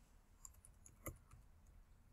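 Faint computer keyboard typing: a handful of soft, irregular key clicks as a short word is typed, against near silence.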